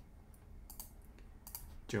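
Several light, irregularly spaced clicks from a computer mouse and keyboard, mostly in the second half, over a faint steady low hum.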